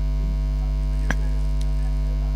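Steady electrical mains hum in the microphone and sound-system chain, one unchanging buzzy tone, with a single faint click about a second in.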